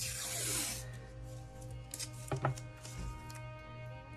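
Blue painter's tape being pulled off its roll, a rasping rip lasting under a second at the start, followed by a couple of sharp taps as the strip is handled. Background music plays throughout.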